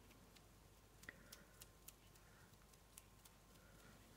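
Near silence: room tone, broken by a few faint, short ticks from about a second in.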